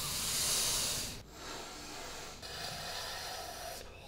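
Three long sniffs in a row, a person inhaling hard through the nose to smell spices. The first is the loudest.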